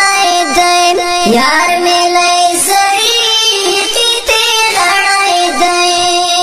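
A Pashto tarana being sung: one voice holding long, drawn-out notes that bend and glide between pitches.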